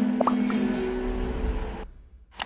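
Vault EA20 acoustic guitar chord ringing on after strumming, with a brief rising squeak about a quarter second in. The sound cuts off abruptly near the end.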